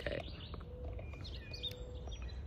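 Garden birds calling with short, high chirps scattered through the moment, over a steady low rumble.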